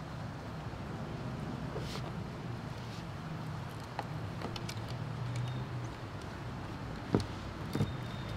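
A steady low rumble of traffic, with a few light clicks and knocks of hands handling fittings and test gear.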